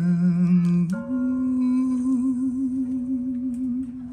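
A young man humming long held notes into a microphone: a low note, then about a second in a step up to a higher note held with vibrato until near the end.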